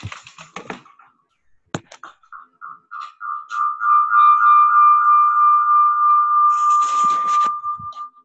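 A high steady tone in the call audio that pulses a few times a second, then holds one pitch loudly for about four seconds before cutting off, like audio feedback in a video call. A sharp click sounds just before the tone begins.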